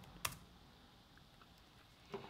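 Dell laptop keyboard: one sharp key press about a quarter second in, the Enter key running a typed 'clear' command, then a couple of faint key taps.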